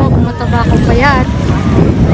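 Wind buffeting the microphone over the wash of small waves breaking at the shoreline, with distant voices of people on the beach.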